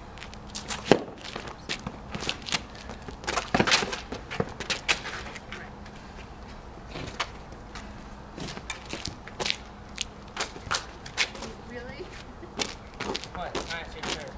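A tennis rally on an asphalt court: sharp, irregular racket hits and ball bounces, opening with a serve struck about a second in, with footsteps on the pavement between shots.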